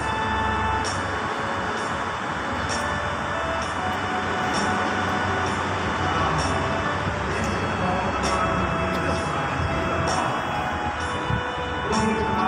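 A large crowd's voices together, heard as one dense blended sound with occasional hissing 's' sounds, over a steady low rumble.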